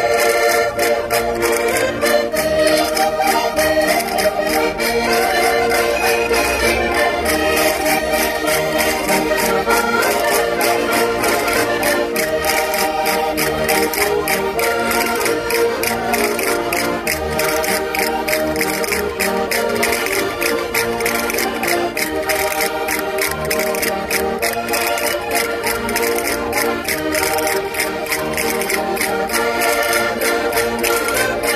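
Several diatonic button accordions (Minho concertinas) playing a traditional Portuguese folk dance tune together, in sustained reedy chords and melody over a steady clicking beat.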